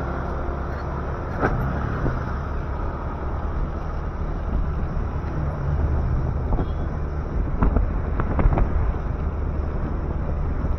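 Motorcycle running steadily while riding along a street, with road and wind noise on the microphone. A few short sharp knocks come about a second and a half in and in a cluster near the end.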